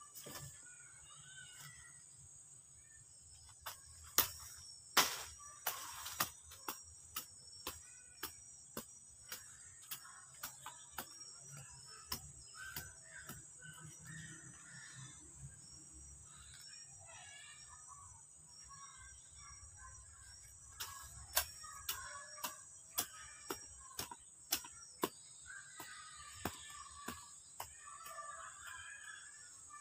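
A hoe chopping into garden soil, a run of sharp knocks about once or twice a second that pauses for several seconds in the middle and then starts again. A steady high-pitched insect drone runs underneath, with scattered short chirps.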